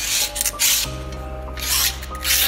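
A hand tool rasping against the metal of a coal-mill rotor being overhauled, in two rough strokes.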